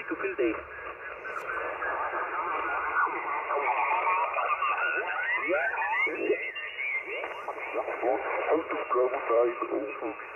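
Icom IC-706MKII HF transceiver's speaker giving out single-sideband voices on the 40-metre band while the tuning dial is turned. The narrow, telephone-like voices slide up and down in pitch as stations pass in and out of tune.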